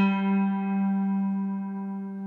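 A three-string cigar box guitar tuned to open G, fretted with a slide, holds one note at a steady pitch, ringing and slowly fading.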